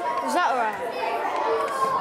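Children's voices talking over one another in a classroom, no clear words.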